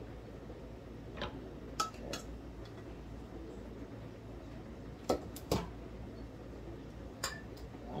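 A few sharp clinks and knocks of dishes and utensils being handled, spaced out over several seconds, over a low steady hum.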